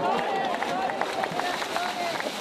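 Splashing steps of a man wading fast out of knee-deep river water, a quick series of slaps and sprays. Voices of people nearby call out near the start.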